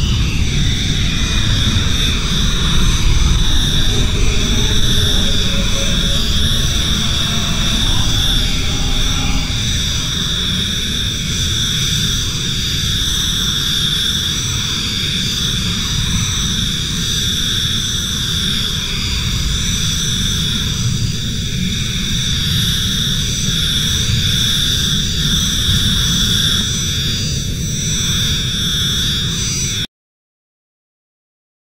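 UVI Falcon 3 software-synth preset "Granular Cave" played from a keyboard: a dense granular ambient drone with a deep rumble under steady high ringing tones, not unlike a jet engine. It opens with a falling sweep and cuts off suddenly at the end.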